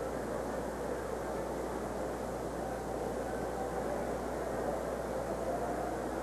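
Steady murmur of a large arena crowd under the hiss of an old tape recording.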